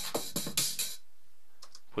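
Drum-machine beat from FL Studio's step sequencer (kick, clap, hi-hat, snare samples) playing a quick even rhythm, cutting off suddenly about a second in when playback is stopped. A couple of faint clicks follow in the quiet.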